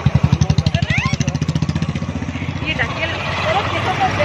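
A small motor vehicle's engine running nearby with a fast, even chug, loud at first and fading about two and a half seconds in, with voices over it.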